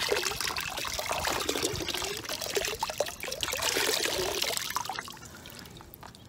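Water pouring and trickling out of a freshly hydro-dipped vase back into a bucket of water as the vase is held above it. It tapers off to a thin dribble about five seconds in.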